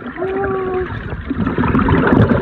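Underwater sound in a swimming pool: a muffled voice holds one note for under a second, then churning water and bubbles as a swimmer kicks past.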